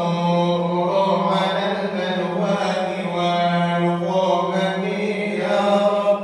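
Male voice chanting an Arabic praise poem for the Prophet (madih) through a microphone, in long held notes that bend and ornament slowly.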